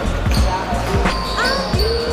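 A basketball being dribbled on a gym floor, with repeated thuds, and sneakers squeaking on the court, heard alongside music.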